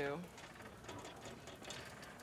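A voice trails off at the start, then a quiet background with faint, rapid light clicking.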